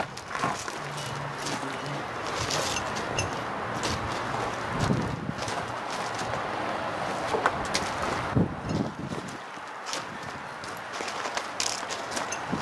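Footsteps and scattered light knocks and clicks over a steady outdoor background noise.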